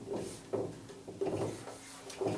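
Dry-erase marker writing on a whiteboard: a few short rubbing strokes of the felt tip on the board as a number and a letter are drawn.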